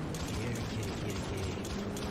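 Motorcycle engine sound effect: a rapid, even mechanical rattle over a low hum.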